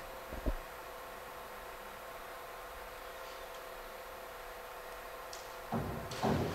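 Steady hum and hiss of a microphone feed, with thin steady tones under a faint noise floor. A single short low thump comes about half a second in.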